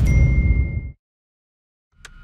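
A trailer title sound effect: a low boom with a bright, thin ding ringing over it, both dying away within about a second, followed by dead silence.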